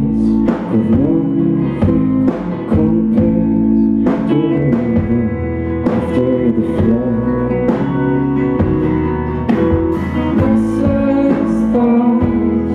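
A rock band playing live: acoustic and electric guitars, electric bass, keyboard and drum kit, with voices singing over the chords.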